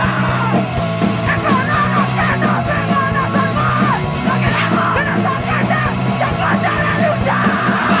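Hardcore punk song: loud, fast distorted guitars, bass and drums under shouted, yelled vocals.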